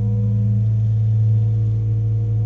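Multihog CV compact sweeper running in sweep mode, its auto-start having brought on the suction fan and brushes: a loud, steady low hum, heard from inside the cab.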